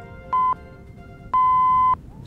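Electronic news-intro music with countdown beeps like a broadcast time signal: a short high beep about a third of a second in, then a longer beep of the same pitch lasting about half a second near the end, which closes the countdown.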